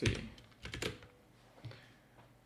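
A few quick computer keyboard keystrokes, bunched together a little under a second in, with one fainter keystroke later.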